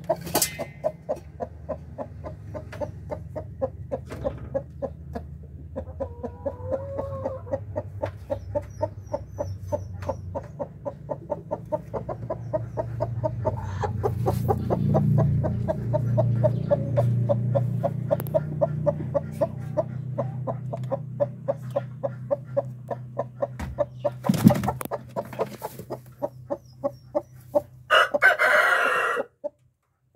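Chickens clucking in a steady quick rhythm, about four clucks a second, with a short gliding call a few seconds in. Near the end a rooster crows loudly.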